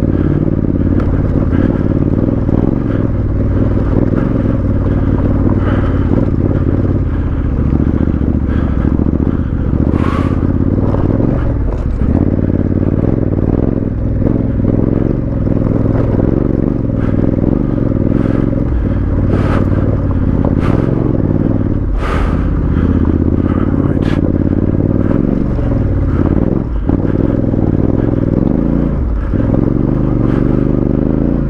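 Honda CRF1100L Africa Twin's parallel-twin engine running steadily while riding over a loose, rocky gravel track, with a scraping clatter of stones under the tyres. Several sharp knocks as the bike hits rocks, the loudest about ten and twenty-two seconds in.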